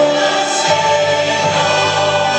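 Mixed church choir singing a held chord with instrumental accompaniment, the bass note changing under it less than a second in.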